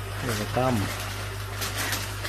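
A brief spoken syllable, then water splashing and a plastic fish bag crinkling as it is worked in an aquarium, over a steady low hum from the tank's pump.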